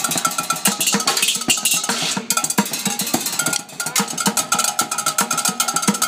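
Pots, pans and kitchen utensils played as a percussion set: a fast, dense run of metallic strikes, with a ringing pitch held through the second half.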